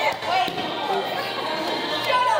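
Voices in a busy bowling alley, with one heavy thud about half a second in.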